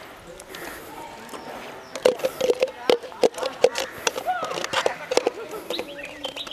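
Thin plastic bottle crackling in a run of sharp clicks as a hand squeezes and shakes it to push out wet fake snow. The clicks come thick and fast from about two seconds in.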